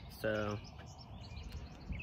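Faint bird chirps over a low, steady outdoor background noise.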